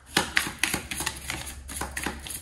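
A deck of oracle cards being shuffled by hand: a quick, irregular run of light clicks and flicks, about five a second, as the cards slide and tap against each other.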